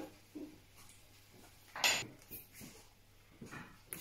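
Quiet kitchen handling sounds from a fork and a pan, with one short, louder scrape or clink about halfway through.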